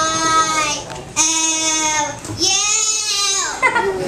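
A young girl's voice singing three long held notes, each about a second long. The last note bends up and down in pitch.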